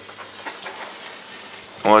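Bacon sizzling on an oven rack: a steady hiss with faint crackling.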